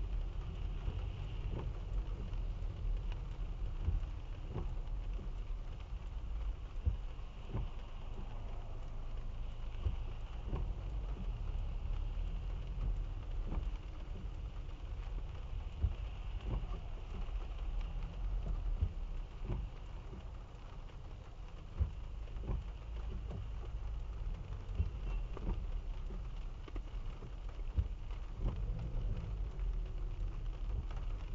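Rain pattering on a car's roof and windshield, heard from inside the cabin, with scattered sharp drop ticks over a steady low rumble from the car creeping along in traffic.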